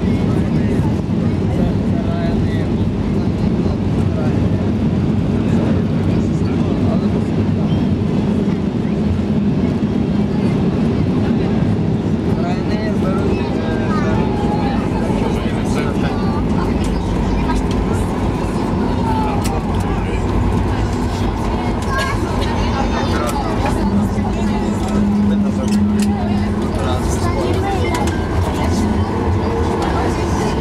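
Cabin noise of a Boeing 737-8200 rolling out on the runway just after touchdown, heard from a window seat over the wing: a steady loud rumble of the CFM LEAP-1B engines, airflow and the wheels on the runway, with the spoilers deployed.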